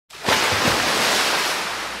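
Steady rushing, hissing spray of fountain water jets, with a couple of low wind buffets on the microphone in the first second. It starts abruptly and begins to fade near the end.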